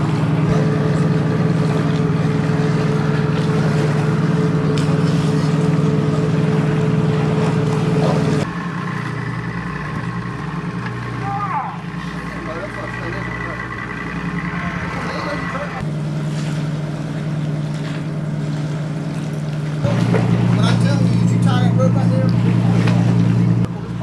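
Work boat's engine running with a steady low hum, its pitch and level changing abruptly a few times between shots. Faint crew voices come through at times.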